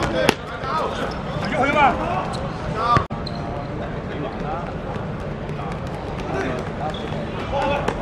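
Players shouting during play, with sharp thuds of a football being kicked and bouncing on a hard court surface. The sound breaks off abruptly about three seconds in, after which a steadier background of distant voices and occasional ball touches follows.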